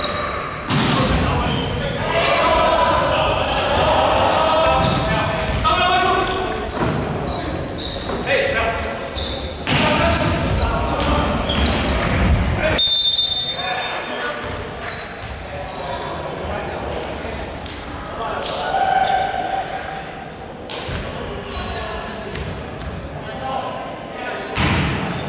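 Basketball game in a large gym: the ball bouncing on the hardwood court and players' voices calling out, echoing in the hall.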